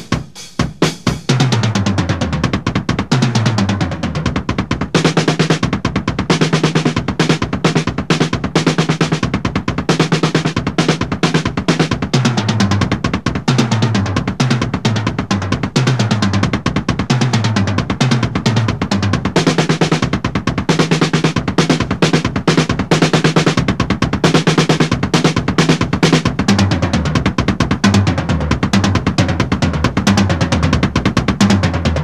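Double bass drum kit played in a fast, continuous solo of single-stroke sixteenth notes, split between the hands and the two bass drum pedals in hand-foot combination patterns. The runs step downward again and again across the toms. A few scattered strokes come first, then the dense playing starts about a second in and runs on without a break.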